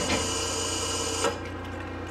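Starter cranking the Detroit Diesel 71-series two-stroke engine of a Crown Supercoach school bus on still-weak batteries without it catching. The cranking stops abruptly about a second and a quarter in.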